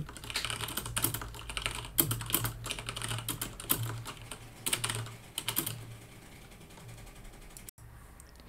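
Computer keyboard typing: quick runs of keystrokes with short pauses between them, thinning out for the last couple of seconds, over a low steady hum.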